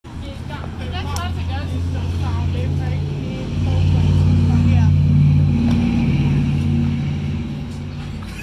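Polaris Ranger 570 side-by-side's engine running with a steady low hum, rising in level about three and a half seconds in as it is revved up, then easing slightly near the end.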